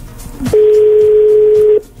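Telephone ringing tone (ringback) heard over the studio phone line: one steady beep lasting a little over a second, the sign that the outgoing call is ringing at the other end and not yet answered.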